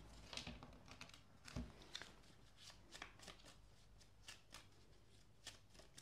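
Tarot cards being shuffled and handled by hand: a scatter of faint, short clicks and slides of card on card.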